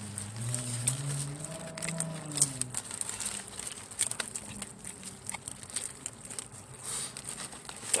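A person chewing a big, soggy cheeseburger with wet, smacking mouth clicks throughout. For the first three seconds or so there is also a low, closed-mouth hum of "mmm".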